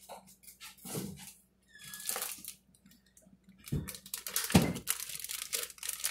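Plastic zip-top bag crinkling and rustling as it is handled, with a few knocks and scattered clicks, busier in the last two seconds.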